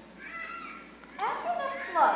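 A child's high-pitched voice speaking lines, in two short phrases.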